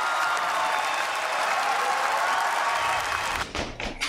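Audience applause, starting suddenly and dying away about three and a half seconds in. A low hum and a few short knocks follow near the end.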